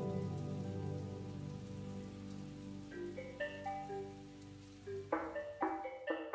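Steady rain, with background music over it. A held chord fades away, and a melody of single struck notes enters about halfway through. It becomes a marimba-like pattern near the end.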